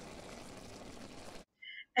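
Ground beef sizzling steadily in a pan on the stove, cutting off suddenly about a second and a half in.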